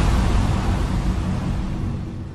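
A rushing, whooshing noise with a deep rumble, gradually fading: the sound effect of an animated logo outro.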